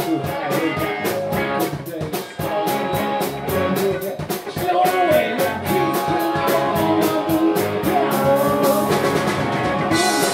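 Live blues-rock band playing: electric guitar lines over a drum kit, with a steady, fast cymbal beat throughout.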